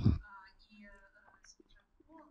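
A woman's voice trailing off at the very start, then a pause holding only faint, low speech.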